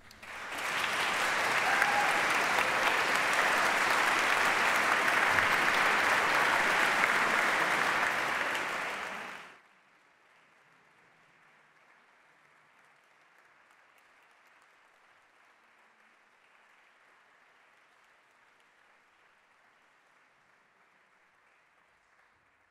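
Audience applauding, starting right as the music ends and holding steady, then cut off abruptly about nine and a half seconds in, leaving only a faint steady hiss.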